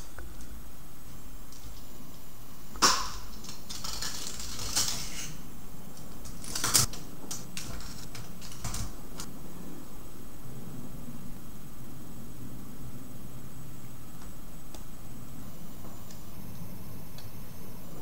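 A steady low hum of background noise, broken by a few brief clicks and rustles about three, four to five, and seven seconds in, as hands handle a hookup wire at a robot controller board's screw terminals.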